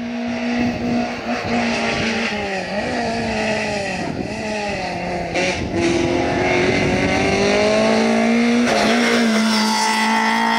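Peugeot 205 GTI rally car's four-cylinder engine at full effort on a climbing stage, growing louder as it nears. Its note dips and climbs again several times as the driver lifts and shifts into the bends, then holds high and hard under acceleration through the second half.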